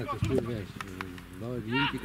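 People talking nearby, with a few short sharp knocks among the voices.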